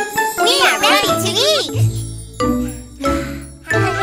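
Children's cartoon soundtrack: music with jingly sound effects, starting with a quick run of swooping tones that rise and fall, followed by several sudden hits with a low bass.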